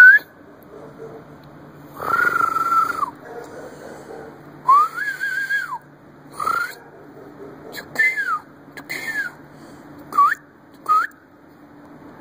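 A man whistling repeatedly to call a dog, about eight whistles in all. Two are long, held notes, one of them rising and then dropping off; the rest are short, quick upward or downward slides.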